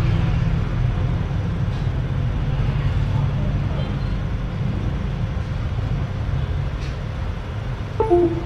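Steady low rumble of background road traffic under a faint hiss.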